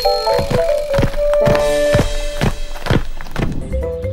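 Cartoon footstep thuds, about three a second, over light background music.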